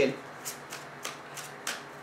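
A Ciro Marchetti Tarot of Dreams deck being shuffled by hand, the cards giving a few soft, irregular clicks and rustles.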